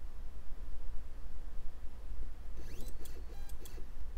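Stepper motors of a desktop laser engraver driven by gSender starting a homing move: a whine rising in pitch as the axes speed up, then a few clicks, over a steady low hum.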